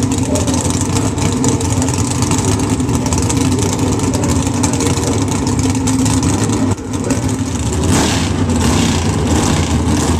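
Pro Stock Chevrolet Camaro's 500-cubic-inch naturally aspirated V8 running at the starting line, a loud, steady idle. There is a brief dip about seven seconds in, then the sound swells louder and brighter near the end.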